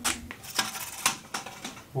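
Crackling and clicking from a self-adhesive LED strip being handled and stuck onto the wall: a string of sharp ticks and crackles, thickest about half a second in.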